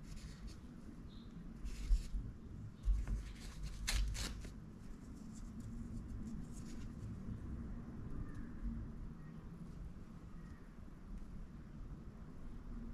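Hands handling a soft-plastic swimbait on a paper towel: faint rustling of the towel and a few soft knocks and scuffs in the first four seconds, then only low, even background noise.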